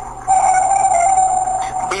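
A recorded sound effect from a sound-effects CD: a steady, mid-pitched held tone that breaks off for a moment just after the start, then holds. It is heard as sounding like a submarine.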